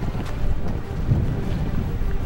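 Wind buffeting the microphone outdoors, a gusty low rumble that swells and dips.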